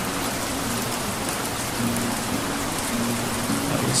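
Steady rain-like hiss, with soft low held music notes faintly beneath it from about halfway through.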